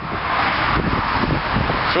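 Wind buffeting a handheld camcorder's microphone, a steady rushing noise with an uneven low rumble.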